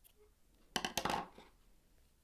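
Small scissors snipping through wool yarn: a quick cluster of metallic clicks about three-quarters of a second in.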